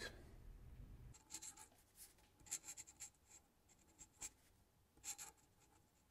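Faint scratching of a pen on paper, a series of short, irregular strokes.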